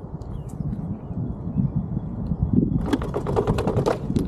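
Riding noise from an electric unicycle on pavement: a low rumble of tyre and wind on the camera microphone. From almost three seconds in comes a rapid rattle of clicks and knocks.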